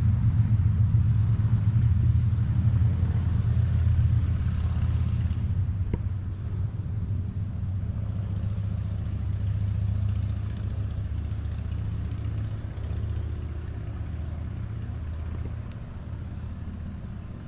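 Outdoor background rumble: a steady low rumble that slowly fades, with a faint high hiss above it and a single small click about six seconds in.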